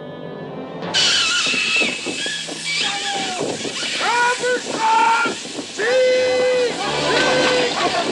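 Film soundtrack: music, then about a second in a sudden loud rush of noise with water splashing and people shouting, as a balloon basket comes down in the water beside a rowing boat.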